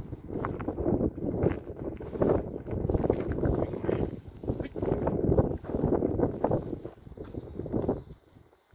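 Wind buffeting the microphone in uneven gusts, mixed with irregular crunches of steps on gravel.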